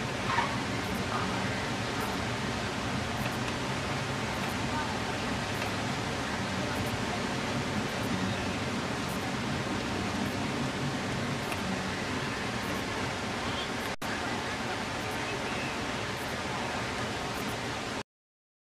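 Steady hiss of outdoor ambience on a cricket field, with faint distant voices in it; the sound drops out for an instant near the end.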